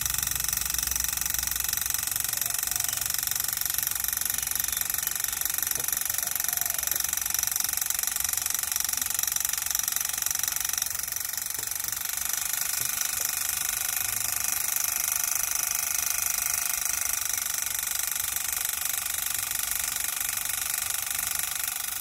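Motor of a radio-controlled model walking tractor driving a miniature long-tail (phaya nak) water pump by belt, running at slightly reduced throttle with a steady high-pitched whine. The whine holds several pitches at once and dips a little in loudness about halfway through.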